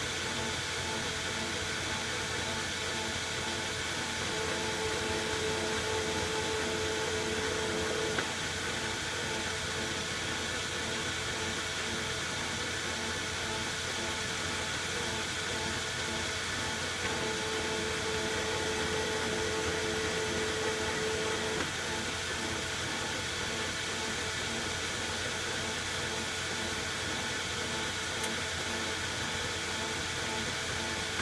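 Metal lathe running steadily while single-point threading a shaft with a carbide threading insert. Twice, a steady whine rises over the machine's hum for about four seconds as the tool takes a threading pass, each pass ending with a sharp click.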